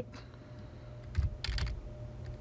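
Computer keyboard keys tapped three times in quick succession, a little over a second in, typing a number.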